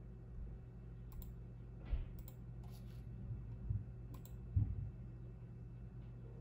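A handful of sharp clicks from someone operating a laptop, spaced about a second apart, mixed with a few soft thumps, the loudest just before the end. Under them runs a steady low hum.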